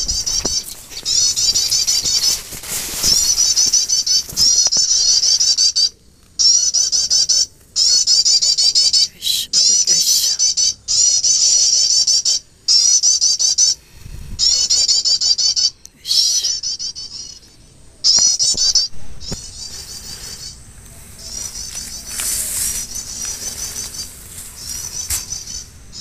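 Prenjak (prinia) calling loudly: rapid runs of repeated high chirps in bursts of a second or two, broken by short, abrupt silences.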